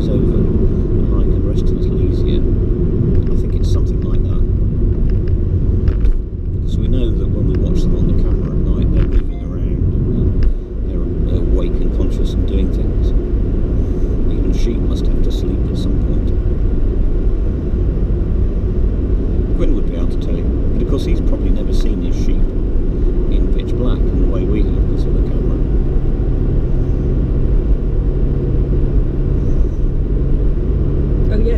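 Steady low rumble of a car's engine and tyres on the road, heard from inside the car, dipping briefly twice, around six and ten seconds in.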